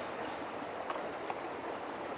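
Steady outdoor background noise, a soft even hiss, with a couple of faint ticks around the middle.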